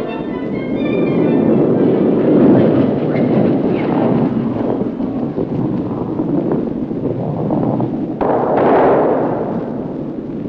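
Orchestral film music that fades out about a second in, followed by a continuous low rumble of a granite curling stone sliding down the pebbled ice. The rumble changes abruptly about eight seconds in.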